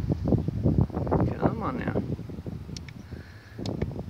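Indistinct, mumbled speech for the first couple of seconds, then a few small sharp clicks near the end as the button below the ATV's digital instrument display is pressed.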